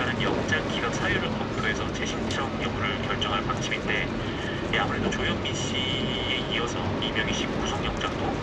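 Steady road and rain noise inside a car driving on a wet road in the rain, with a brief high steady tone about six seconds in.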